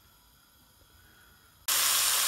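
Near silence, then about a second and a half in, a sudden steady loud sizzle starts: diced smoked lardons frying in a pan.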